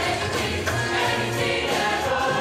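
Mixed show choir singing together, holding notes at several pitches over instrumental accompaniment with a steady bass.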